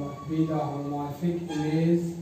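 A man's voice, slow and drawn out in long held syllables.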